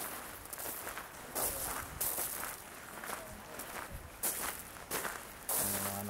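Footsteps crunching on gravel at a walking pace, irregular steps from people walking.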